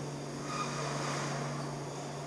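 Steady low hum under a hiss of room tone, the hiss growing slightly louder from about half a second in.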